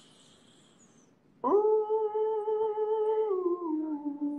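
A person humming one long held note, starting with a quick upward scoop about a second and a half in, then stepping down to a lower pitch near the end.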